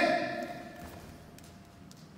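A sharp karate kiai shout during the kata Seipai, loudest at the start and dying away in the hall's echo over about a second. Two faint taps follow near the end.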